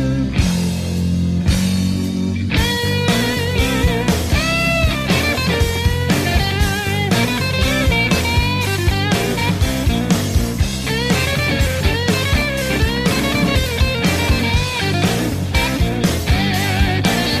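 Blues-rock song with a guitar playing a lead line of wavering, bent notes over bass and drums keeping a steady beat.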